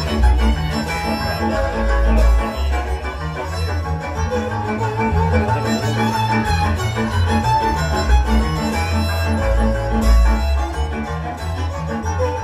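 Hungarian folk dance music from a string band: a lead violin carries the tune over a steady off-beat accompaniment and a pulsing double bass, keeping an even dance rhythm.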